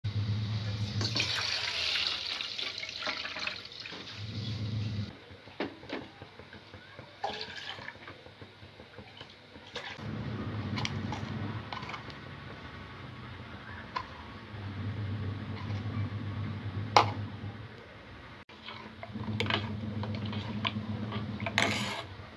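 Milk poured from a steel can through a plastic strainer into a steel pot, a splashing rush over the first few seconds. After that come scattered clicks and knocks of steel kitchen vessels, with one sharp knock about two-thirds of the way through, over a low hum that comes and goes.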